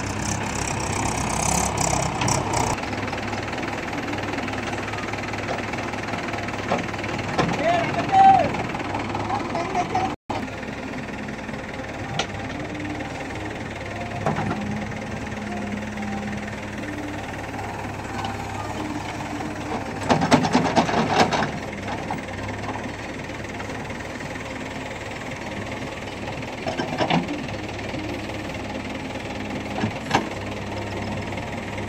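JCB 3DX backhoe loader's diesel engine running steadily under working load as the backhoe digs wet soil and loads it into a tractor trailer, with a short rising whine about a quarter of the way in and a louder, noisier stretch about two-thirds of the way through.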